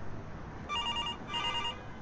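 Landline telephone ringing: two short trilling rings, each about half a second, starting about two-thirds of a second in.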